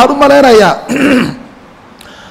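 A man's voice finishing a phrase, then a single short throat clearing about a second in, followed by a pause.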